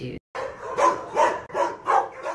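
A dog barking repeatedly in quick succession, four louder barks a little under half a second apart.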